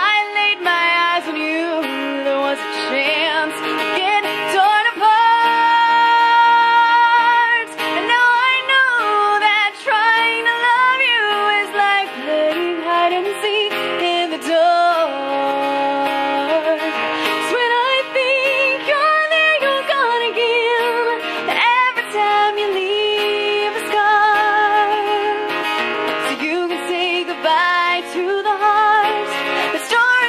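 A woman singing a song live to her own acoustic guitar accompaniment, holding some long notes with vibrato.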